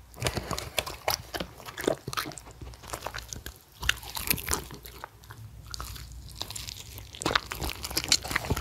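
Shetland sheepdogs chewing bites of pan-fried jeon, wet irregular chewing and crunching with lip smacks, starting suddenly and coming in louder clusters about two, four and seven seconds in.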